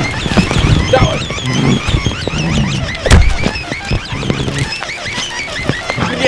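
Two men scuffling and grappling on muddy ground in a fistfight, with shouts and grunts and scattered knocks, and one sharp thud about three seconds in that is the loudest moment. Small high chirps run behind throughout.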